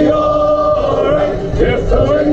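Music with choral singing, voices holding long steady notes.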